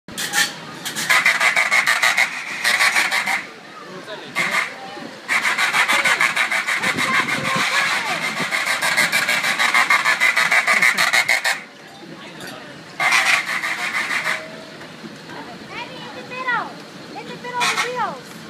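Kiddie-ride car's electric buzzer horn sounded again and again in raspy blasts of uneven length: a few short ones at first, one long blast of about six seconds in the middle, and another short one later. A child's voice calls out near the end.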